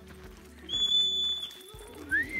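A marmot's alarm whistle: one loud, high, steady whistle lasting just under a second, about a third of the way in.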